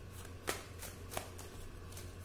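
A deck of tarot cards being shuffled by hand: soft card slaps with two sharper snaps, about half a second in and just over a second in, over a steady low hum.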